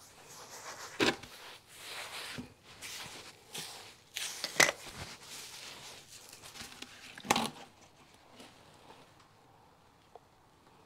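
Gloved hands mixing loose potting soil and perlite on a concrete floor: an uneven scraping and rustling, with sharper scrapes about a second in, at about four and a half seconds and at about seven seconds, dying away in the last two seconds.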